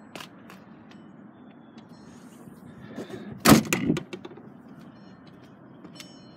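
A 2010 Volkswagen Tiguan's rear liftgate being shut: one loud thud about three and a half seconds in, with a smaller knock just after. A few faint handling clicks come before it.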